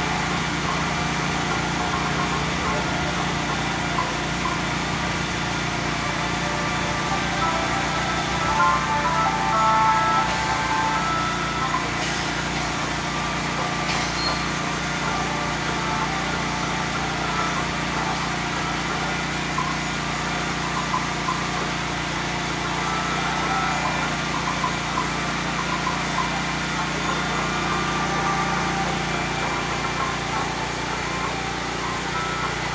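A steady, engine-like hum runs throughout, with music and voices faintly over it.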